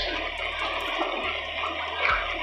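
Background music bed with no speech: a steady rushing hiss over a low, steady bass.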